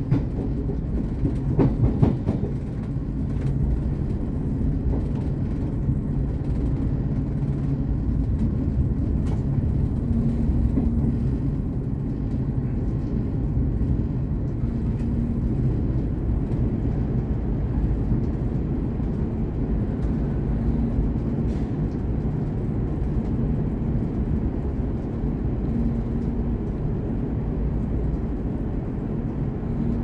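V/Line VLocity diesel railcar running along the track, heard from the cab: a steady low rumble of engine and wheels on rail. A few sharp clicks in the first couple of seconds as the wheels cross the points.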